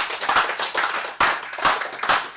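Hands clapping in applause, a dense, continuous run of claps from a small audience in a small room.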